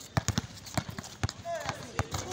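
Basketball dribbled hard on an outdoor concrete court: several sharp, irregular bounces mixed with quick footsteps as the player drives toward the basket.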